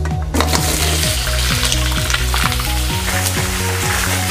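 Blanched lamb trotters sizzling as they hit caramelised sugar in a hot iron wok, starting about a third of a second in, then stir-fried so the sizzle runs on.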